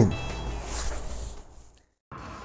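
The tail of a man's voice, then faint steady room tone that fades away to silence shortly before the end.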